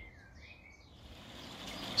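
Faint outdoor birdsong: a small bird's wavering, chirping song in the first second. A soft hiss of noise then swells near the end.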